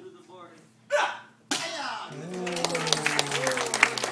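A short loud shout about a second in, then cheering and clapping break out suddenly and carry on, with one voice holding a long low cheer: the spectators applauding a board break at a taekwondo promotion test.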